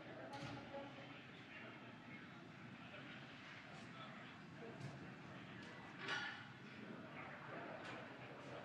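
Faint, indistinct voices on the mission audio feed, with a few short clicks and a brief louder burst about six seconds in.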